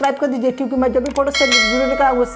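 Bell-like notification ding of a subscribe-button animation, ringing out suddenly about one and a half seconds in, just after a couple of sharp clicks.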